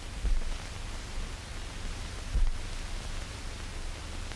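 Steady hiss and static of an old film soundtrack, with a few faint low thumps.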